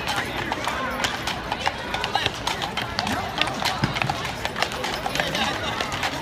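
Hooves of a pair of horses clip-clopping on the street as they pull a carriage, an irregular run of hoof strikes, with people talking nearby.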